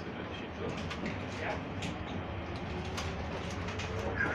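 Stadler tram running along the track, heard from inside the car: a steady low rolling rumble with scattered short clicks and a faint whine that rises slowly in the second half.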